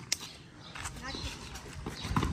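Faint, distant children's voices calling out over quiet outdoor background, with a single sharp click just after the start.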